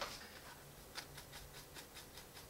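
Faint scratching and a few light ticks of a damp stiff brush scrubbing and stabbing at a plastic model boxcar's roof, chipping the acrylic paint off over a hairspray layer.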